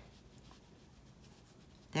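Faint soft brushing of a Chinese painting brush drawing a long ink stroke across paper.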